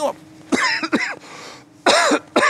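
A man coughing and clearing his throat into his gloved fist: a short cluster of coughs about half a second in, then a softer breath before he speaks again.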